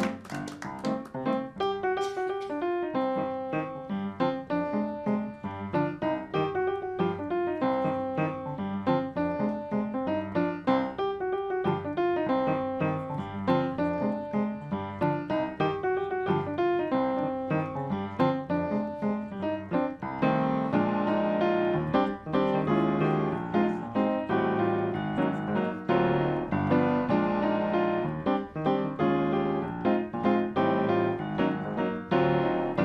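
Solo upright piano playing a piece of chords and melody, growing fuller and louder about two-thirds of the way through.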